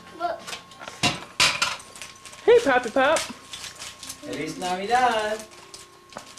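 Voices talking, with no clear words, in two short spells. A few sharp rustles or clicks come about a second in.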